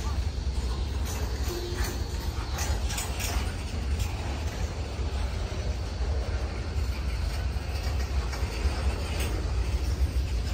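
Freight train's boxcars rolling past: a steady low rumble of wheels on rail with scattered clicks and rattles from the cars.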